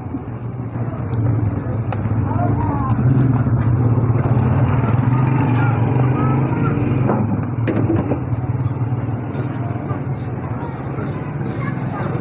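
An engine running close by, growing louder about a second in and easing off after about eight seconds, with voices talking in the background.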